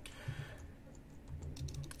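A few faint keystrokes on a computer keyboard, most of them near the end, as the code editor is switched into insert mode and a blank line is opened.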